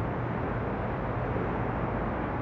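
Steady outdoor background noise: an even hiss over a low hum, with no distinct events.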